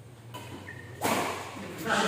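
Badminton rally ending: a sudden sharp smack about halfway through, then spectators breaking into loud cheering and shouting near the end. Brief shoe squeaks on the court floor early on.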